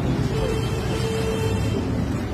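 City street noise: a steady low traffic rumble with people's voices mixed in, and one held tone that lasts about a second.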